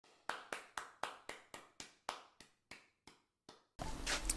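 A run of sharp ticks, about four a second at first, spacing out and fading as they go, like something winding down. A louder sound comes in just before the end.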